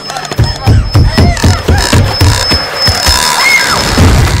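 Horror film soundtrack: a loud run of low thuds, about three a second, begins about half a second in. It plays under a high steady tone and a few shrill sounds that rise and fall.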